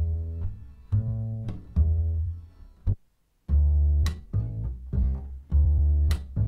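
Sampled Balkan folk bass loops from BeatHawk's Balkans pack playing: short, low, plucked acoustic bass notes in a rhythmic line. The line stops for about half a second around three seconds in, and a second bass loop starts.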